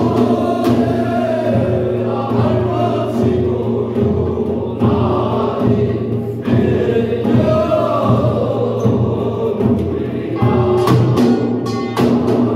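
Bi-nari, a Korean ritual blessing chant, sung over steady accompaniment. Sharp percussion strikes come back in near the end.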